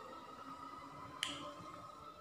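A single light clink of a metal fork or knife against a ceramic plate about a second in, over a faint steady hum.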